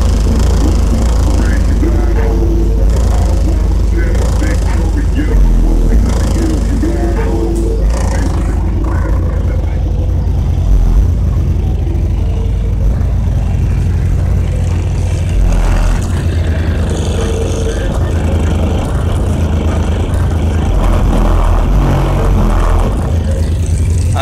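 A song played loud on a car audio system, heavy bass from an HDS215 subwoofer on about 850 watts carrying all the way through, with a vocal line over it, heard from outside the vehicle.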